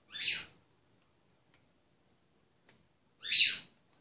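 A bird squawking twice: two short, sharp, high-pitched calls about three seconds apart, the second louder.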